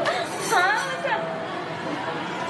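Chatter of many voices in a busy indoor public place, with one voice sounding out loudly in a quick run of rising and falling pitch about half a second in.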